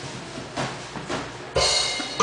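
Drums: a few soft, evenly spaced hits about two a second, then a louder cymbal-like crash near the end.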